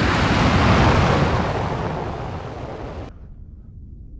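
Rocket-thruster roar sound effect: a loud rushing roar that slowly fades, then cuts off abruptly about three seconds in, leaving a faint low rumble.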